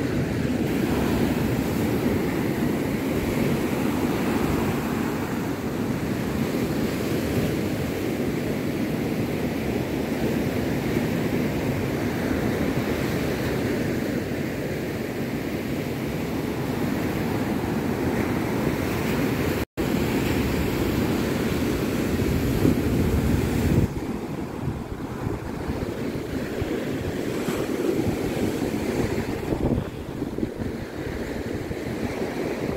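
Sea waves breaking and washing up a sandy beach, with wind buffeting the microphone. The surf sound cuts out for an instant about two-thirds of the way through and is quieter for the last few seconds.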